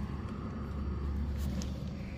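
A steady low rumble of vehicle noise, with no distinct events.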